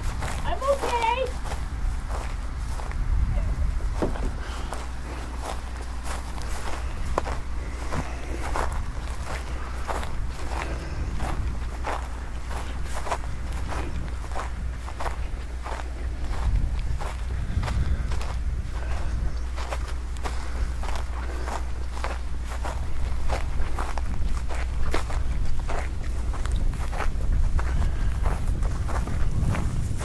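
Footsteps on dry grass and dirt, about two steps a second, over a steady low rumble of wind on the microphone.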